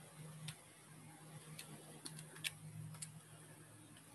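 A few faint, irregular button clicks, about six of them with the loudest about two and a half seconds in, typical of calculator keys being pressed while a sum is worked out. Under them runs a low steady room hum.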